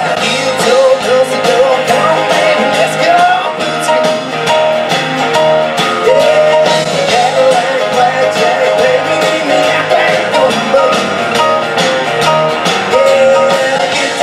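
Live country rock band playing through a stage PA: electric guitars, bass guitar and drum kit, with bending melody lines over a steady beat.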